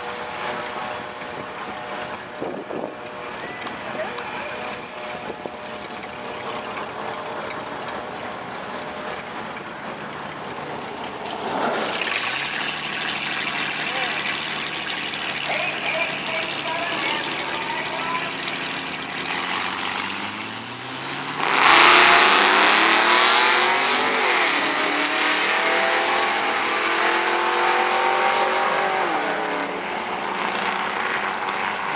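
A 3.8 V6 Mustang and a late-model Pontiac GTO drag racing. They idle at the starting line, then rev louder from about twelve seconds in. About twenty-two seconds in they launch at full throttle in a sudden loud burst, and the engines climb in pitch and drop back at each gear shift as they pull away.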